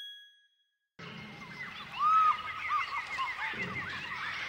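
A short chime rings once and fades within a second. After a moment of silence, a jungle ambience of many chirping, whistling animal calls begins, with one louder swooping call about a second after it starts.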